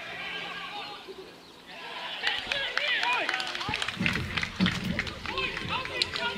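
Footballers shouting on the pitch, several voices calling over each other, as a goal is scored. The shouts grow busier from about two seconds in, with a louder, fuller burst of voices past the middle and a few sharp knocks.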